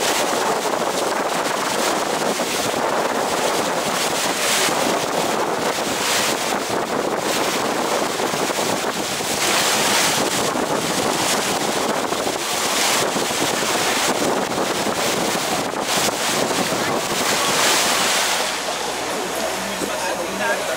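Wind buffeting the microphone and water rushing past the hull of a moving tour boat, swelling in gusts every few seconds. Near the end the wind noise drops and a steady engine hum comes through.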